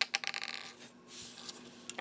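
Small plastic Lego pieces clicking and rattling under the fingers as the flick-fire missile parts on a Lego Microfighter Millennium Falcon are handled: a quick run of clicks in the first second, then a soft brushing noise and a few more clicks near the end.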